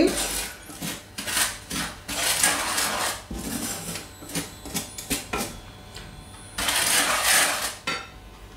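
A wooden spatula scraping and stirring dry sugar in a stainless steel frying pan, in a run of short rasping strokes. Near the end, a longer, louder rush as water is poured from a glass onto the sugar in the pan.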